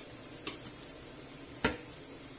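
Onion, garlic and red pepper frying in olive oil in a stainless steel pot with a steady gentle sizzle. A single sharp click comes about a second and a half in.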